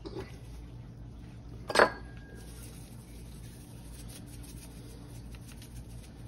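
A single metallic clank with a brief ringing tone about two seconds in, from a metal sheet pan as raw pork pieces are turned over on it. Otherwise a low, steady background hum.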